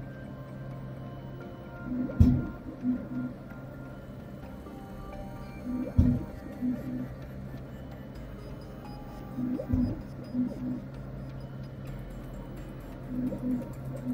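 Resin 3D printer peeling each layer off its ACF release film: a loud pop four times, about every four seconds, each time with a few short notes from the build-plate lift motor. The pop marks the cured layer snapping free of the film, which happens in the early layers of the print.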